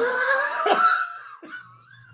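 A man laughing: a loud, breathy burst of laughter that trails off over about a second and a half.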